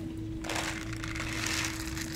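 Dry cat kibble poured from a plastic bottle, rattling out and scattering onto paving stones, starting about half a second in.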